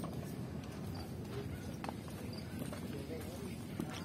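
A bull's hooves scuffing and pawing in loose sand, with a few faint knocks, over a steady low rumble.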